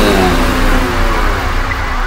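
Dubstep track in a transition: layered synth tones slide steadily downward in pitch over a sustained low bass.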